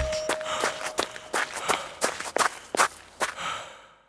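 Rhythmic sharp taps, about three a second, like footsteps or light percussion, fading out to silence near the end.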